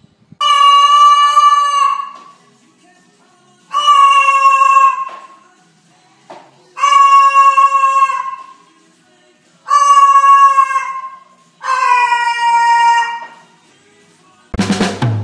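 White cockatoo calling loudly five times, each call a long, steady, high note held for about a second and a half and dropping slightly in pitch at the end.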